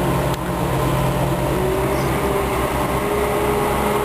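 A hydraulic excavator's diesel engine running steadily at close range with a low throb, and a higher whine joins about two seconds in.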